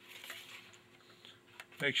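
Faint sliding scrape of a Remington Nylon rifle's inner magazine tube being pushed into the magazine tube in the plastic stock, heard mainly in the first half second. A man starts speaking near the end.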